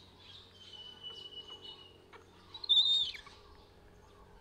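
High-pitched animal calls: a thin, steady whistle held for about a second and a half, then a short, louder squeal about two-thirds of the way in that drops in pitch as it ends, over faint scattered chirps.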